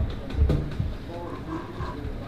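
A man's quiet, murmured speech, fainter than the talk around it, with a low knock about half a second in.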